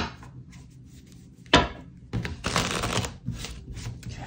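A tarot deck being shuffled and handled by hand: a sharp slap of cards about a second and a half in, then about a second of cards rustling, with light ticks after.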